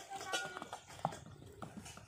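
Horse's hooves striking packed dirt as it is ridden away, a handful of faint, irregular hoofbeats.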